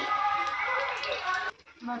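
A voice over background music, cut off by a brief drop to near silence about one and a half seconds in.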